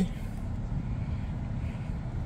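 Jeep Compass 2.0 flex-fuel four-cylinder engine idling just after push-button start, a steady low hum heard from inside the cabin.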